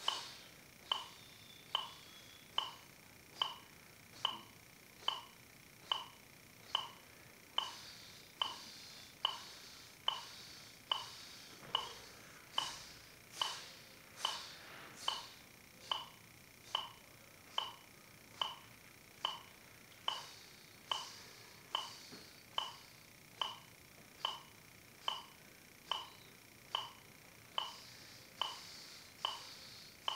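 Electronic metronome clicking at a steady tempo, a little faster than once a second (about 70 beats a minute), each click a short pitched beep.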